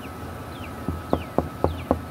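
Birds chirping in short, repeated falling whistles over a faint steady high tone. About a second in come five sharp, evenly spaced knocks, about four a second.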